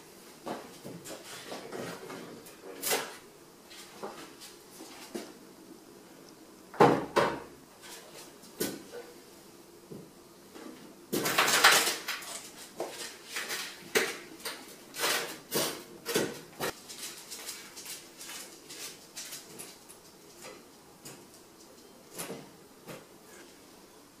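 A sheet-metal electric fireplace insert being lifted by its handles and slid into a fireplace opening: scattered knocks, bumps and scraping against the firebox and hearth. There is a sharp bump about seven seconds in, and the loudest run of scrapes and knocks comes about halfway through as it is pushed into place.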